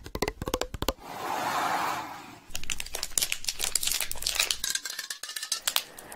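Close-miked ASMR trigger sounds: long fingernails tapping on a plastic bottle held at the microphone. A fast run of taps comes first, then a soft hiss for about a second and a half, then quicker, irregular tapping and crinkling.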